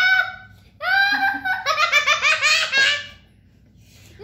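A young child laughing, high-pitched: a short burst, then a longer run of quick laugh pulses that stops about three seconds in.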